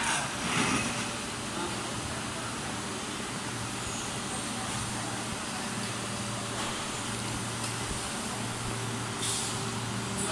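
Steady machinery hum of running injection moulding machines and factory equipment, with a short hiss about nine seconds in.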